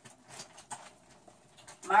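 A few faint clicks against a wire rat cage, with rats climbing the bars, and a woman's voice beginning near the end.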